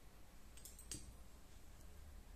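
Faint, close clicks of a pair of scissors snipping off the knitting yarn, a little before one second in, over near silence.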